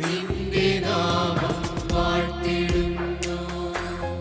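A Christian devotional song: a choir singing with electronic keyboard accompaniment and a steady percussive beat, with long held notes.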